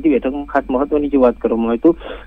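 Only speech: a man talking quickly and without pause, with a narrow, telephone-like sound.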